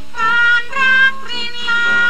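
A woman singing a Thai university song in long held notes, with instrumental accompaniment.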